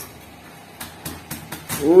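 Cleaver chopping water spinach stems on a cutting board: a run of quick knocks, about four or five a second, in the second half, with a man starting to speak near the end.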